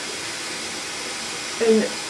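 A steady, even hiss with nothing else standing out, then a single spoken word near the end.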